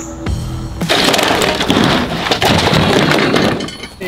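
Background music, then about a second in a loud crash and clatter of a folding table collapsing. Cups and cans scatter, and the noise lasts a couple of seconds before dying away.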